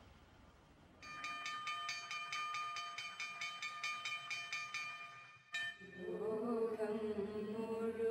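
A high, steady ringing tone pulsing about four times a second, cut off by a click about five and a half seconds in; then voices begin a slow, held chanted prayer.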